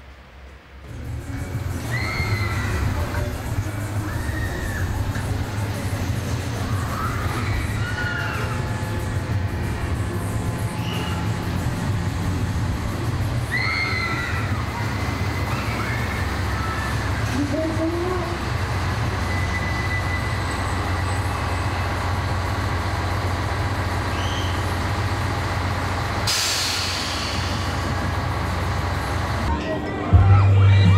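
Diesel passenger railcar running with a steady low engine rumble, and a short burst of hissing air near the end, like a brake release.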